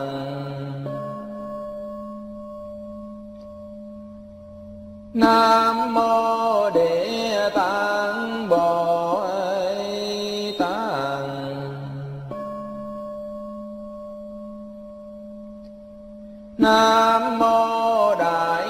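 Vietnamese Buddhist chanting: a voice sings invocations in a melodic line with bending pitch. Between phrases the chant settles into long held notes that slowly fade, twice. The singing comes back about five seconds in and again near the end.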